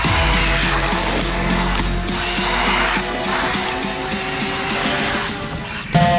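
A micro 4WD brushless RC rally car (Carisma GT24 Subaru WRC, 1/24 scale) driving close by on asphalt, its motor and geared drivetrain running, under background music. The sound comes in suddenly at the start and holds steady until just before the end.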